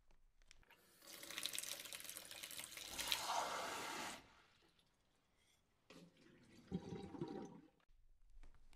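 Kitchen tap running water into a glass for about three and a half seconds, then shut off. A couple of seconds later there is a brief knock and a shorter, lower handling sound.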